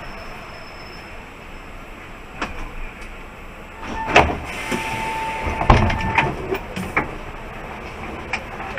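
Mercedes-Benz Citaro G articulated bus slowing to a stop. Steady cab noise gives way halfway through to a rush of air, a steady high tone lasting about a second and a half, and several sharp knocks and clicks.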